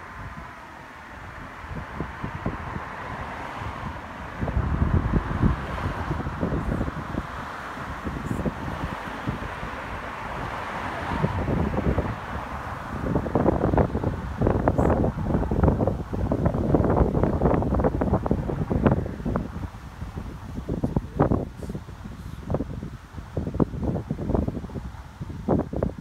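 Wind buffeting the microphone in irregular gusts, stronger in the second half, over the hiss of cars passing on the road, which fades away in the first half.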